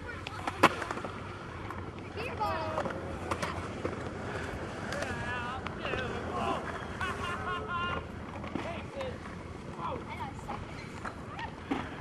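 Skateboard wheels rolling on concrete with a steady low rumble, a sharp knock about half a second in, and faint distant voices talking.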